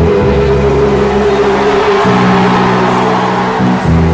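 Loud music with sustained held chords; the bass notes change about halfway through and again briefly near the end.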